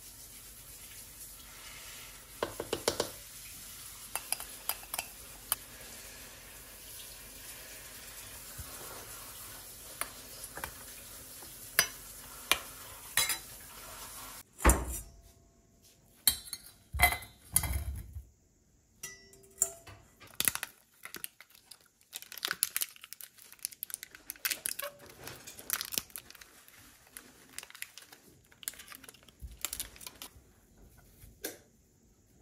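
Kitchen utensils clinking: a spoon taps against a glass mixing bowl over a steady background hiss. About halfway through the hiss stops, and a metal sieve and utensils knock and clatter repeatedly against a stainless steel bowl holding boiled potato chunks.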